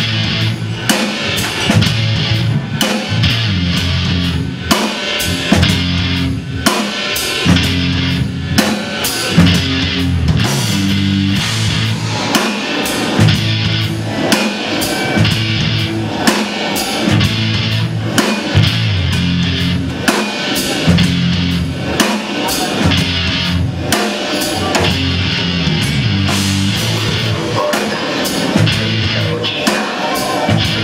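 Live instrumental heavy rock: electric guitar riffing over a drum kit, loud and continuous, with frequent bass drum and cymbal hits.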